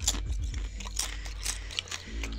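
A person chewing crunchy food close to the microphone: irregular crunches and crackles.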